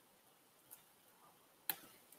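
Near silence, broken by a faint tick a little over a third of the way in and a sharper short click near the end.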